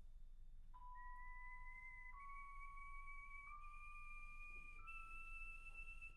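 A soft, pure, flute-like tone holding one note at a time and stepping up in pitch about every second and a half, in a quiet passage of a wind orchestra piece.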